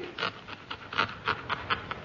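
A steel pen nib scratching on paper in a quick, uneven series of short strokes, about four a second. It is the scratchy nib being used to rule up a ledger.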